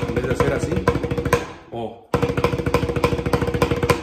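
Banda snare drum (tarola) played with wooden sticks: a fast, dense stream of strokes in a 6/8 rhythm, with the drum's ring sustaining under them. It stops briefly a little before halfway and starts again.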